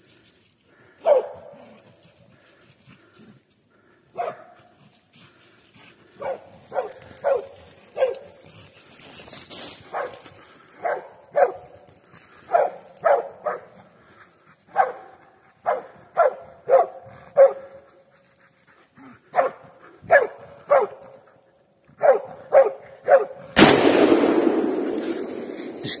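A hunting dog barking in short, separate barks, at first with gaps and then in quick runs of two or three. This is the dog baying a wounded wild boar that it has followed into the night. Near the end there is a sudden, loud burst of noise that lasts a couple of seconds.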